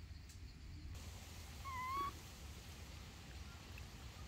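A baby macaque gives a single short coo call about halfway through, a clear pitched sound of about half a second that bends slightly upward, over a faint steady outdoor background.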